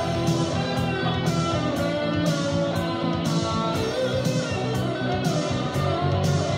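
Instrumental passage of a rock song: a lead electric guitar plays a held melody over a steady drum beat, with cymbal hits about twice a second.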